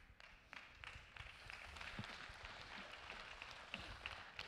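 Faint scattered applause from a congregation, a soft patter of many small claps.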